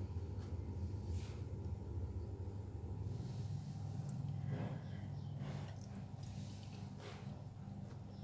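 Steady low hum with a few faint clicks and scrapes of a metal spoon against the plate as it scoops up curry, mostly around the middle.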